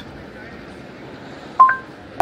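Google Assistant's short two-note chime through the car's speakers, a lower note followed by a higher one about one and a half seconds in, marking the end of voice input before the dictated reply is read back.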